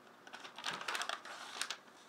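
A quick run of light clicks and taps lasting about a second, starting about half a second in.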